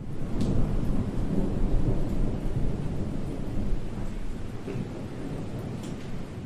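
A low, rumbling noise with a hiss over it, like distant thunder and rain, that swells in at the start and fades away near the end, with a couple of faint crackles.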